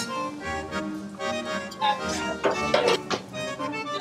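Background music led by an accordion playing held notes and chords.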